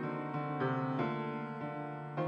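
Piano playing a church prelude, chords and melody notes changing every few tenths of a second.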